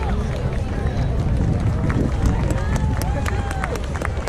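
Wind buffeting an outdoor action-camera microphone with a steady low rumble, under faint chatter of a crowd of spectators. Scattered sharp clicks come in the second half.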